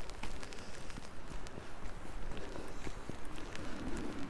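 Footsteps of a person walking on a wet hillside trail, with the rustle of a waterproof jacket and scattered small ticks.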